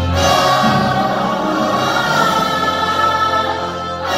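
A large musical-theatre cast singing together in chorus over music. A new sung phrase begins right at the start, and there is a brief dip just before the end.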